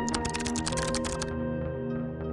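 Rapid computer-keyboard typing sound effect over soft background music; the clatter of keys stops just over a second in, leaving the music's sustained notes.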